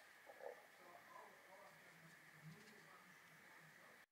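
Near silence: a faint steady hiss with a few soft, faint sounds.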